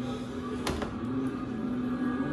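Steady low drone from the quiet intro of the music video being played, with one sharp click a little under a second in.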